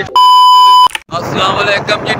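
A loud, steady, high electronic beep, well under a second long, of the kind dubbed in as a censor bleep at an edit. It starts and stops abruptly and is followed by a man talking.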